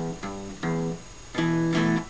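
Guitar playing a simple blues riff that alternates E and G on the low strings: three picked notes or chords with short gaps, the last one held for about half a second at a different pitch.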